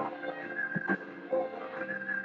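Instrumental passage of a blues-rock song: a guitar plays held, wavering lead notes with sharp attacks over the band's backing.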